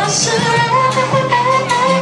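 Live R&B band with a female singer: a held, wavering vocal line over long bass notes and regular cymbal-like ticks.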